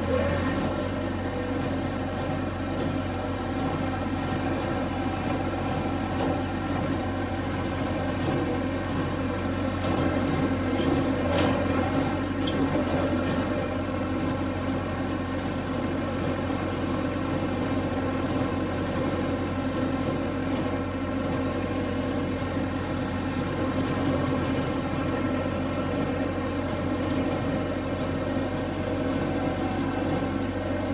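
Massey Ferguson 383 diesel tractor engine running at a steady speed while the tractor mows pasture with a rotary cutter (bush hog), with a few brief knocks around the middle.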